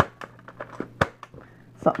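Sharp plastic clicks from a Nerf Zombie Strike Hammershot blaster being handled, with two loud clicks about a second apart and small rattles and rustling between.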